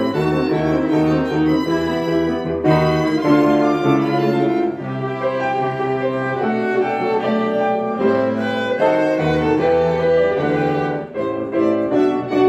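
Small chamber ensemble of violins, cello and piano playing a pop song arranged for strings and piano. The violins carry a sustained bowed melody over cello and piano bass notes.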